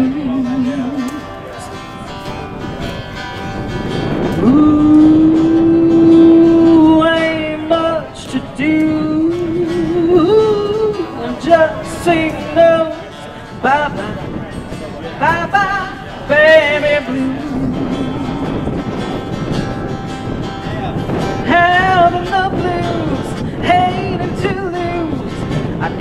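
Live acoustic band playing a country song: a fiddle plays long, wavering melody notes over acoustic guitar strumming and upright bass.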